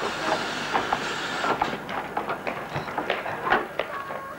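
A 15-inch gauge steam locomotive rolling slowly past, with irregular clicks and knocks from its wheels and motion on the track, and a hiss for about the first second and a half.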